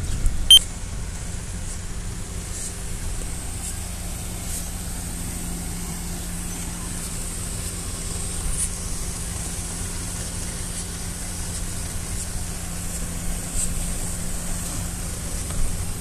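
Heavy diesel engine of concrete-laying machinery running steadily at one constant pitch, with a single sharp click about half a second in.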